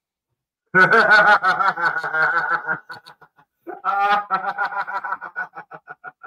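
Men laughing in two bouts, the second trailing off into short chuckles.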